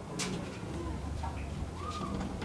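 Outdoor ambience: a steady low rumble with a bird calling and a faint click near the start.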